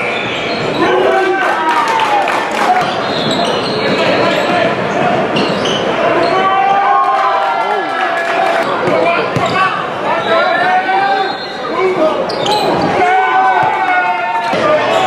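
Basketball dribbling and bouncing on a hardwood gym floor during live play, with players' and spectators' voices echoing in the hall.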